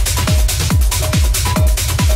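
Techno in a DJ mix: a steady four-on-the-floor kick drum at about two beats a second, with short synth blips between the kicks and hi-hats above.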